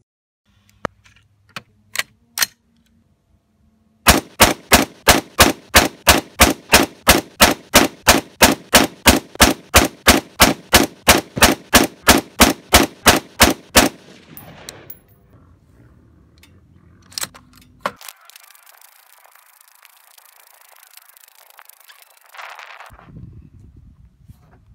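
AR-15 rifle shots from a 30-round group, edited into one rapid, even string of about thirty shots at roughly three a second. A few sharp single cracks come before the string.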